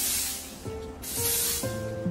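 Broom sweeping leaves across concrete: two swishing strokes about a second apart, over background music.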